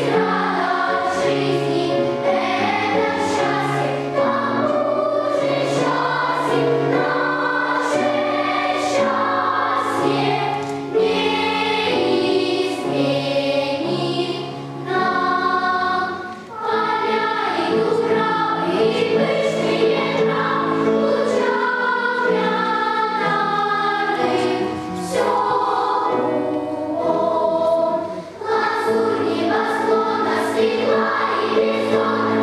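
Children's choir singing in a reverberant hall over an accompaniment that carries a stepping low bass line, with short breaks between phrases about halfway through and near the end.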